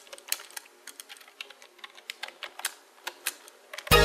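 Typing sound effect: irregular key clicks, about three or four a second, as the title text is typed out letter by letter. Loud music starts just before the end.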